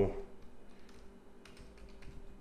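A few quick, light keystrokes on a computer keyboard in the second half, typing in a search.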